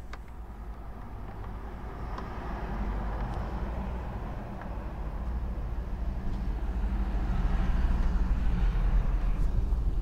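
A motor vehicle's engine running at a steady low speed, growing gradually louder.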